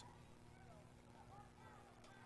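Near silence: faint background ambience of a football broadcast, with a steady low hum.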